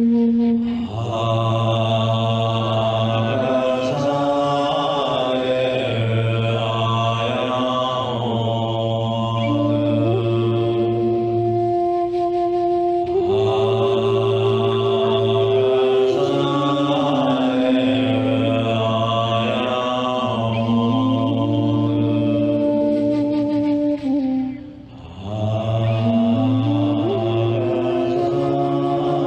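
A man's voice chanting a slow, melodic mantra in long held notes that step slowly up and down, with a brief break about 25 seconds in.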